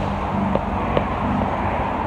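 Outdoor car-park ambience: wind buffeting the phone microphone over a steady low rumble, with a couple of faint clicks.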